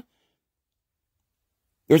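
Near-total silence in a pause between a man's spoken phrases; his voice resumes near the end.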